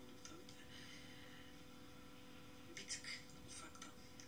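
Very faint speech from a video playing on a computer, a few soft syllables near the end, over a faint steady hum.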